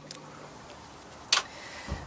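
A single sharp click about a second and a half in, over faint background noise, followed by a short low thump near the end.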